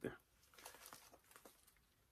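Faint rustling and a few small clicks of cardboard takeout boxes and their bag being handled and set in place.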